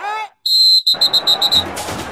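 A whistle blown in one warbling blast of about a second, its high tone stuttering in quick pulses, just after a short vocal 'uh?'. Music comes in near the end.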